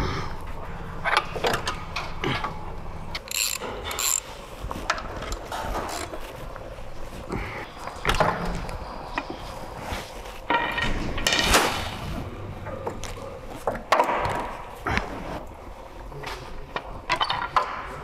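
Hand ratchet clicking in irregular runs, with metal tools clinking and knocking against steel parts as fasteners are undone under a car.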